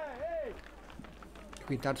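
A man's voice trailing off in a drawn-out, falling hesitation sound, then a pause of about a second with only faint background noise, then speech starting again near the end.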